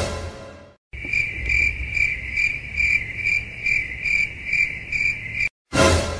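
Crickets sound effect: a steady, high chirping a bit over twice a second, used as the comic 'awkward silence' gag. It sits between two sudden hits that fade out, one just after the start and one near the end.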